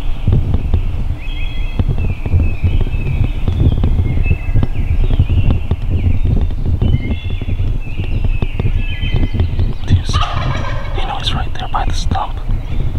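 Wild turkey gobbling again and again from the roost, one gobble after another, over a steady low rumble.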